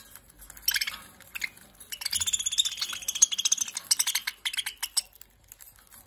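Budgerigars chattering in fast high chirps and clicks: a short burst about a second in, then a dense run of chatter for a few seconds that fades out near the end.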